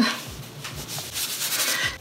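Fingers rubbing and sliding on paper, a hissing scrape in several short strokes.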